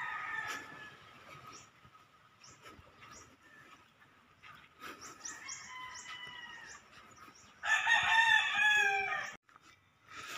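A rooster crowing: one loud crow near the end lasting almost two seconds, with a fainter crow from farther off about five seconds in.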